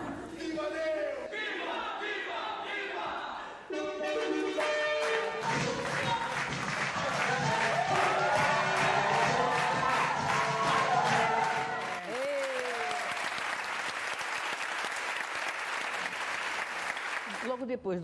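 A theatre audience applauding and cheering while the cast takes its bows, with some music, heard in an old, dull archival recording. It opens with a few seconds of a voice on stage before the applause begins.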